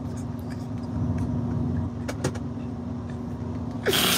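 Truck engine running, heard inside the cab: a steady low rumble with a constant hum.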